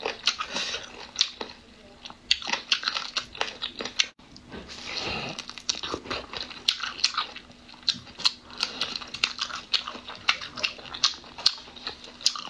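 Close-miked biting and chewing of a chili-coated shrimp, with many sharp, irregular crunches and clicks as the shell is bitten.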